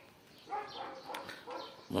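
Faint animal calls, with a light click about a second in.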